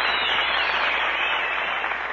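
Studio audience applauding, slowly dying down.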